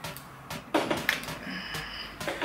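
A few short, light clicks and knocks from a flat iron hair straightener as its plates are clamped shut on a section of hair and drawn through it.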